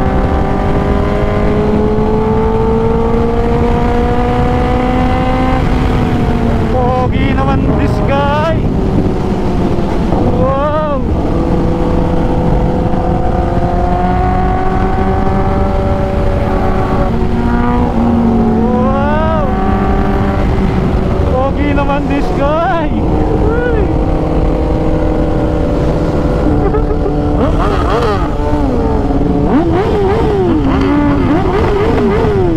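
Kawasaki ZX-10R's inline-four engine running at a steady cruise, heard from the rider's seat with wind noise, while a second sports bike rides alongside. The engine pitch drifts slowly, with a few quick rises and falls.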